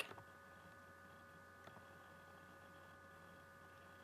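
Near silence: faint steady electrical hum and room tone, with one faint click a little before halfway.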